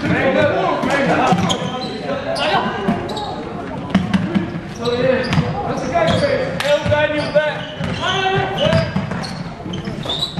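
Basketball bouncing on a sports-hall floor during play, with players' and spectators' voices calling across the echoing hall.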